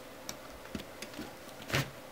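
Handling noise from an LCD panel assembly being picked up by gloved hands: a few light clicks, then a louder, brief knock and scrape near the end as the hands take hold of the panel's frame edge.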